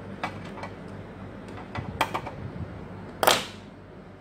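Diagonal side cutters clicking as they are worked around a power supply wire bundle, then one sharp snap about three seconds in as they cut through the green wire of the power supply harness.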